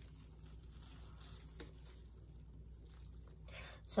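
Quiet room tone with faint rustling and one small click about one and a half seconds in, as gloved hands pick up plastic cups, a spoon and a stirring stick over plastic sheeting.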